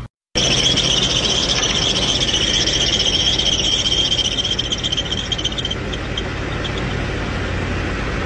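Car engine running with a loud, steady high-pitched squeal from a slipping accessory drive belt at the alternator pulley. The squeal dies away about six seconds in as a deodorant stick is rubbed on the belt, leaving the plain engine running.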